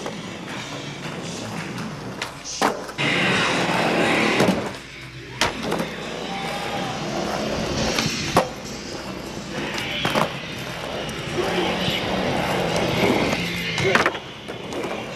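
Skateboard wheels rolling across a hardwood floor, with several sharp clacks of the board popping and landing, over background music.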